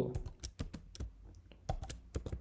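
Typing on a computer keyboard: a quick, irregular run of keystrokes while code is entered.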